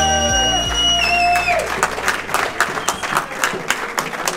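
Music with long held notes that ends about halfway through, followed by an audience clapping in a hall.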